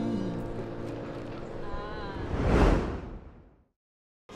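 The last sustained notes of a song fade out, and a swelling whoosh transition effect builds to a peak about two and a half seconds in, then falls away into silence near the end.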